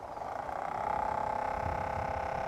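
Automated rotating-arm spore collector switched on: its small electric motor spins the collecting arms at high speed, making a steady hum that builds over about the first second and then holds.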